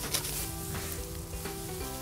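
A hand sickle cutting through dry rice stalks with a crisp, crackling crunch, over background music with long held notes.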